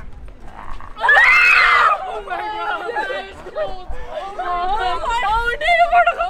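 A woman's short, loud scream of fright about a second in, set off by a person hidden in a bush disguise, followed by several people laughing and talking excitedly.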